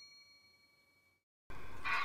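The ringing tail of a bright bell-like ding, an edited-in sound effect, dying away over about a second. After a moment of dead silence, the room sound of a lecture hall with a distant voice cuts in suddenly near the end.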